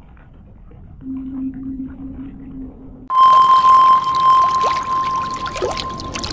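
Effect-distorted intro soundtrack: a low steady hum from about a second in, then a sudden loud jump about three seconds in to a steady high tone over a noisy wash, with a few short falling swoops.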